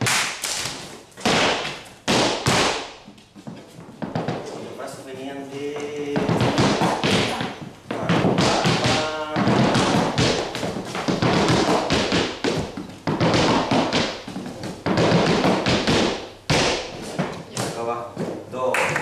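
Flamenco footwork (zapateado): dancers' shoes striking a wooden floor in fast rhythmic runs of taps and stamps. The strikes are sparse with short pauses for the first few seconds, then run on densely. A voice calls out briefly in between.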